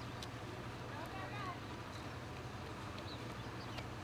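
Faint street ambience under a steady low hum, with distant voices briefly heard about a second in.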